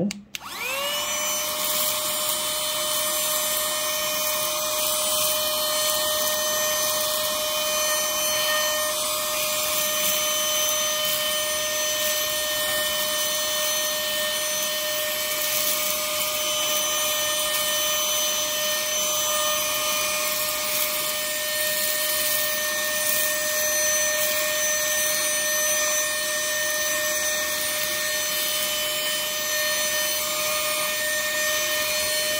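Opolar 3-in-1 cordless mini vacuum switched on. Its motor spins up with a quick rising whine, then runs steadily with a high whine over rushing air as the brush nozzle sucks up grains of rice.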